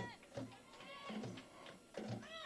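Faint distant voices calling and chanting in high, arching tones, over a soft low beat about twice a second.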